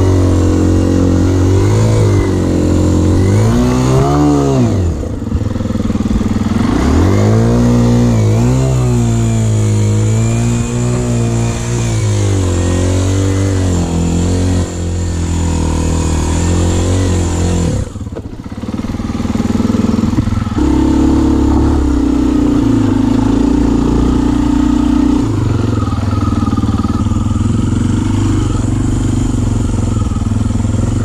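Kawasaki KLX dirt bike's single-cylinder four-stroke engine under way, revving up and down twice in the first several seconds, then pulling more steadily. The engine sound drops briefly a little past halfway.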